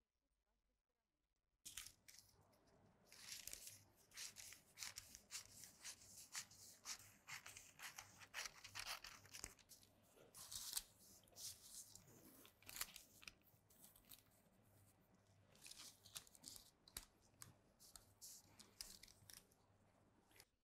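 Scissors cutting through paper: faint, quick snips in bursts, starting a little under two seconds in, as the slash lines of a paper sleeve pattern are cut.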